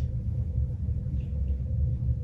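Steady low rumble of room background noise with a faint constant hum, and no music or speech over it.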